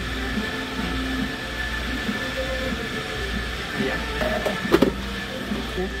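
Café room noise: a steady low hum with a thin high whine over it and faint background voices. A sharp knock sounds about three-quarters of the way through, as things are set down on a wooden table.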